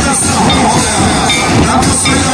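Loud traditional drumming with metal cymbals clashing, a troupe of drummers playing together over crowd voices.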